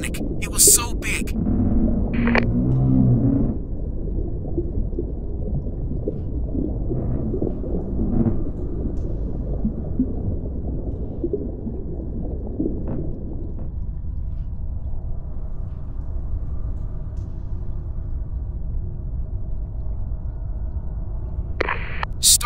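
Steady low rumbling deep-sea ambience of a simulated submersible dive, with a short low groan about two seconds in.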